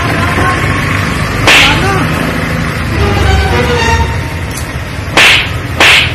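Three sharp, short cracks, one about a second and a half in and two close together near the end, over a steady low rumble with faint voices.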